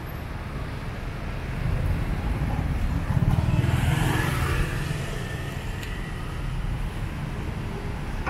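Slow city-street traffic: car engines and tyres passing close by, a steady low rumble that swells as one vehicle goes past about three to four seconds in.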